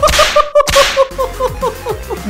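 A sharp swish of noise in the first second, over a quick run of short, repeated high notes that fade out about halfway through: an edited comic sound effect.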